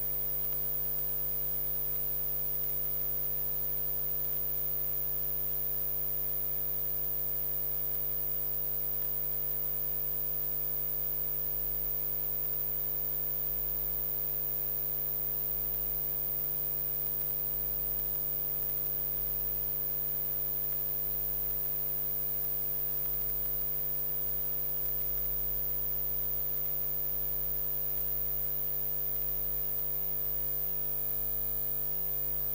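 Steady electrical mains hum: a low buzz of several fixed tones over faint hiss.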